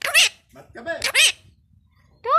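Indian ringneck parakeet calling in two short bursts of high, rising-and-falling notes, the first right at the start and the second, longer one about a second in.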